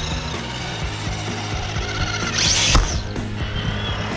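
Traxxas TRX-4 RC crawler's electric motor and geared drivetrain whirring and ratcheting as the truck drives close past, with a brief louder rising-and-falling whine about two-thirds of the way in.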